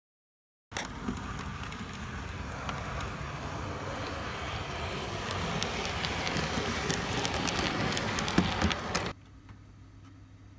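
OO gauge model train running past on the layout's track: a continuous rattle of wheels on the rails with many small clicks, growing a little louder as it goes. It stops abruptly a second before the end, leaving a quiet room hum.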